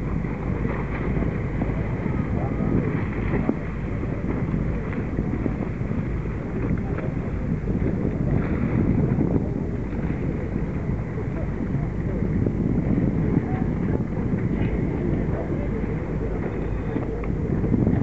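Steady wind buffeting the microphone aboard a boat on open water, a rushing, fluttering noise concentrated in the lows.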